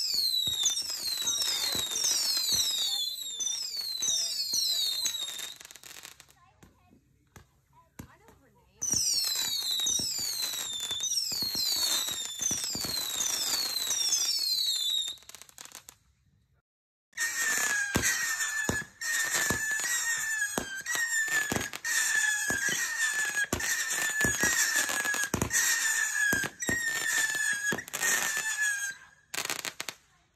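Fireworks going off in three volleys of rapid falling whistles with pops. The last and longest volley adds a lower whistle and sharper cracks.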